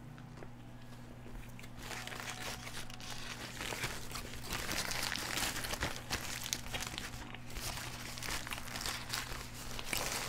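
Crinkling of a paper food wrapper being handled, starting about two seconds in and running on irregularly, over a low steady hum.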